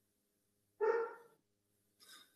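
A dog barks once, a short single bark heard faintly over the video call's audio.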